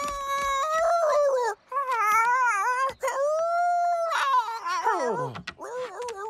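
A cartoon pug howling into a microphone: a string of long, wavering howled notes with two short breaks, the last sliding steeply down near the end.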